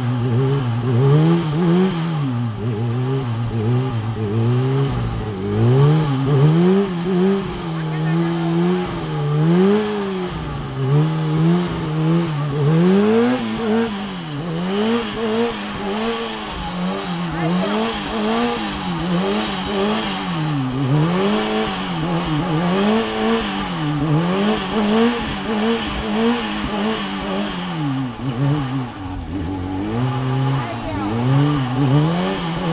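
Kawasaki sport bike engine revving up and falling back again and again, a rise every one and a half to two seconds, as the throttle is worked to hold the bike in a wheelie on a wheelie training machine.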